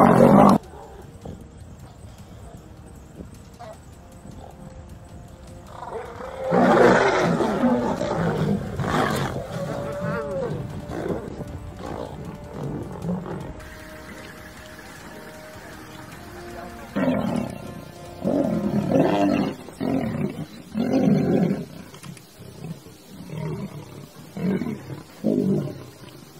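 Lions growling and roaring during fights, in bursts: a loud spell of roaring from about six seconds in, then quieter, then a run of short roars about a second apart through the second half.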